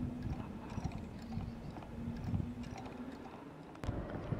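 Light, irregular clicking from a homemade ring-magnet wheel motor as it turns, over a steady low hum. A single sharp click comes near the end.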